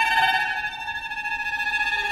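Violins and viola of a contemporary chamber ensemble holding high sustained tones with a fast, trembling flutter. A new note swells in right at the start.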